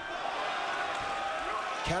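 Steady arena crowd noise from the boxing audience, an even murmur of many voices with no single sound standing out.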